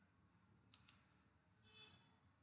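Near silence with faint computer mouse button clicks: two quick clicks about three-quarters of a second in, then a faint short rustle near the end.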